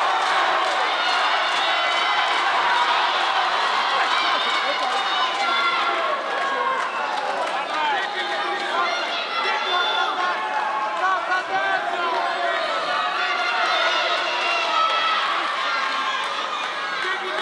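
Boxing crowd in an arena: many overlapping voices shouting and calling out, a steady din with some cheering.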